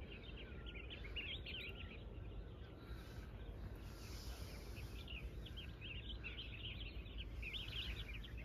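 Small birds chirping faintly: many quick, high chirps throughout, over a low steady rumble.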